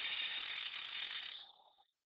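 Rapid fine ratcheting clicks of a computer mouse scroll wheel as the page is scrolled, fading out about a second and a half in.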